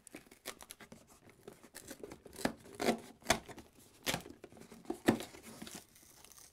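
Cardboard toy-set box being torn open at its perforated flap: an irregular run of sharp cracks, snaps and rustles of cardboard, with the loudest snaps a little past the middle.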